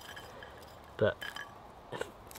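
Roasted chestnut shells cracking and crinkling faintly as fingers peel them, with a few small clicks.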